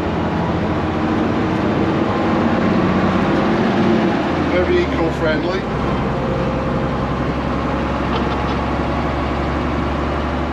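Gardner diesel engine of a Bristol VR double-decker bus running under way, heard from inside the passenger saloon. Its low note shifts about four seconds in and then holds steady.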